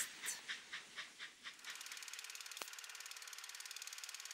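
Steam locomotive exhaust chuffing, about four or five beats a second, fading away in the first second and a half. A fast, steady mechanical ticking then takes over.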